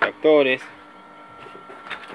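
A man's voice for the first half second, then low background noise with a faint steady high tone and a light click near the end.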